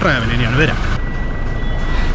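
A man speaking briefly, then the low rumble of a car cabin with a thin, steady high-pitched tone.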